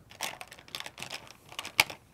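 Paintbrushes clattering as they are picked through on a work table: a run of light clicks and taps, with one sharper click near the end.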